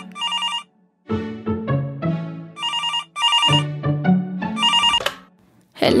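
Landline telephone's electronic ringer trilling in short double rings, three times about two seconds apart, over background music.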